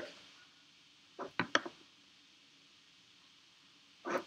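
Quiet room tone broken by a brief cluster of three short clicks or taps about a second and a half in.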